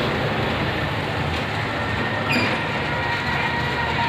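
Steady rumble of street traffic, with a brief high tone a little over two seconds in.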